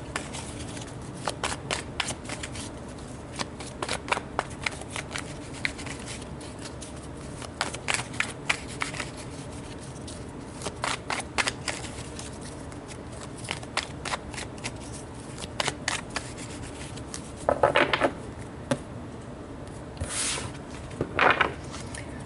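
A tarot deck being shuffled by hand: a long run of quick card flicks and snaps, with a couple of louder bursts near the end.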